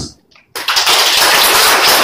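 Audience applauding, breaking out suddenly about half a second in and holding dense and steady.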